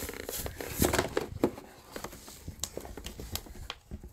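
Clear plastic clamshell packaging and its cardboard backing being pulled apart and handled, crinkling and crackling with irregular clicks and scrapes as a toy is unboxed.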